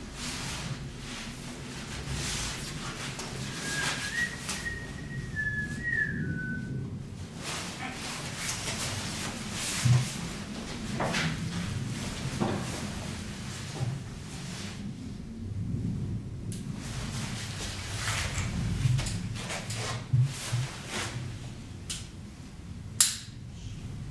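Hands knocking, clattering and rustling while straps and a load rig are fitted to a test beam, with sharp knocks about ten seconds in and near the end. A person whistles a short phrase of a few notes about four seconds in.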